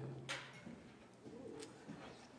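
Faint rustling and a few light knocks as a congregation sits down, with a sharp click near the start. A steady low hum stops about half a second in.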